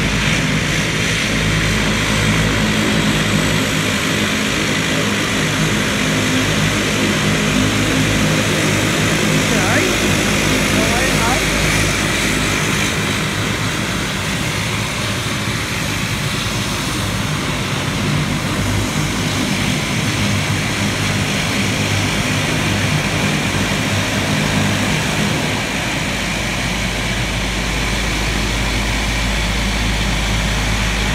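A QantasLink Dash 8-300's twin turboprop engines and propellers running steadily as the aircraft taxis, a continuous propeller drone, with a deeper rumble building near the end.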